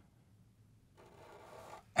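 Near silence, then from about a second in the faint scratchy hiss of a Sharpie marker being drawn across paper.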